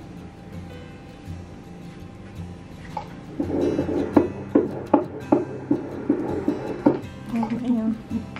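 An embryo's heartbeat heard through an ultrasound machine's Doppler, starting about three and a half seconds in as a fast, regular pulsing whoosh at about two and a half beats a second. The rate is 153 beats per minute, right in the middle of normal.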